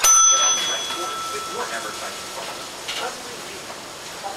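A small bell struck once, ringing a clear high tone that fades out over about a second, with low voices in the background.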